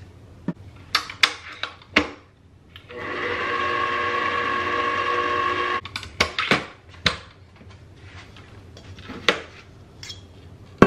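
Electric stand mixer motor whirring steadily for about three seconds as its wire whisk whips heavy cream, then cutting off abruptly. Sharp clicks and metal clinks come before and after it as the mixer head and stainless steel bowl are handled.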